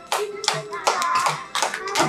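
Hands clapping in a steady rhythm, about two to three claps a second, keeping time to a song.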